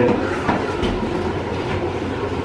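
A steady rumble with a few sharp clacks, like a rail car rolling on track. The loudest clack comes about half a second in, with a low thump just before the one-second mark.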